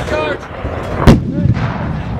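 A British 105mm L118 light gun firing a single round about a second in: one loud report with a short rumbling tail.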